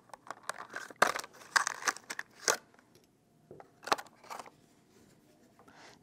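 Clear plastic packaging crinkling and clicking in irregular bursts as a coax connector is taken out of its packet, busiest in the first two and a half seconds with a few more crackles around four seconds in.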